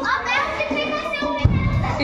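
Children's voices and chatter in the background, some of them high-pitched. A brief low thump on the phone's microphone comes about one and a half seconds in.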